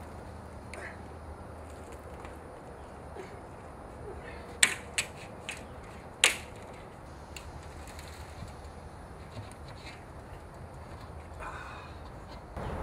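A few sharp knocks from a steel tank being tipped onto its side and handled to free a cured concrete casting, the loudest about four and a half and six seconds in, over steady low background noise.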